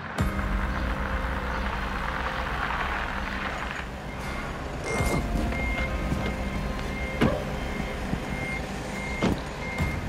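A truck's reversing alarm beeping at an even pace, a little slower than once a second, over the low rumble of an idling truck engine, with a few sharp knocks.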